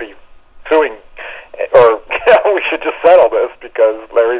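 Men talking, their voices thin and cut off at the top, as if over a telephone line.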